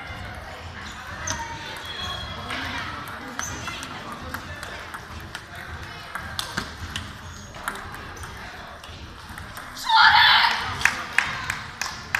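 Table tennis balls clicking off paddles and tables in rallies, echoing in a sports hall, with voices in the background. About ten seconds in comes a loud burst, about a second long.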